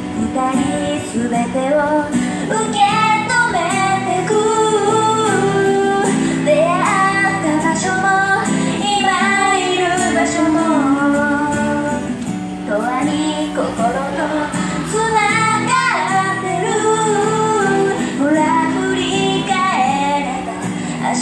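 Live street performance of a Japanese pop song: female vocals sung into microphones over an acoustic guitar accompaniment, continuing without a break.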